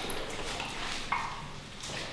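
A dog licking at a rubber lick mat on the floor: a run of faint, quick clicks and taps.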